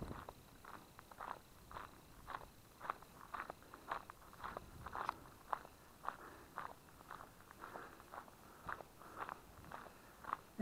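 Footsteps on a gravel track at a steady walking pace, about two steps a second, faint.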